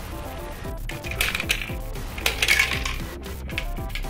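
Marbles rolling and clattering through plastic marble run track, with two bright bursts of rattling about a second in and just past the middle, over background music.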